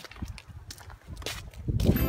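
A few footsteps crunching on snowy, slushy pavement, spaced about half a second apart.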